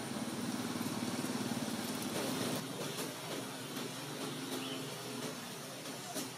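An engine running at a steady low hum, breaking into shorter, uneven tones about halfway through, with a few faint clicks.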